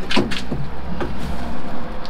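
A few light knocks and scrapes, mostly in the first second, as a plywood hull panel is shifted and pressed into place against the boat's frame, over a low steady hum.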